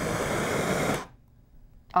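Handheld propane torch flame hissing steadily, then cut off suddenly about a second in as the torch is shut off.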